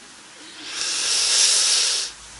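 Breathy laughter, a hissing rush of air without voiced tone, swelling about half a second in and stopping abruptly.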